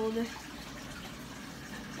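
Steady splashing and trickling of water from the filters running on an aquarium.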